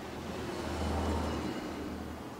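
A low rumble that swells for about a second and then fades, over faint steady hiss.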